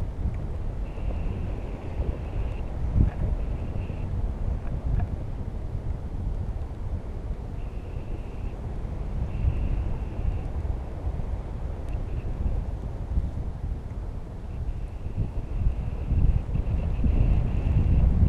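Wind buffeting the microphone in flight under a tandem paraglider: a steady low rumble that swells and eases with the gusts. A faint high tone comes and goes several times.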